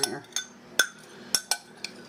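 A spoon clinking against the pressure cooker's inner pot while stirring broth: about six short, ringing clinks at an uneven pace.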